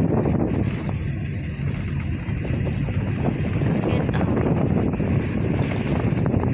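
Steady low rumble of a car driving along a road, heard from inside the cabin, with wind noise.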